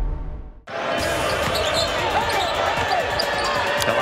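A deep intro boom dies away, with a brief drop-out just under a second in. Then comes live arena game sound: a basketball dribbled on the hardwood court, short sneaker squeaks and the steady murmur of the crowd.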